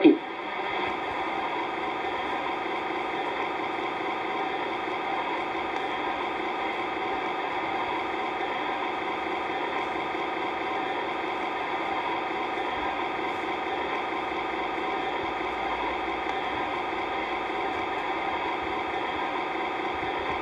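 A steady, unchanging hum made of several held pitches, at an even level throughout.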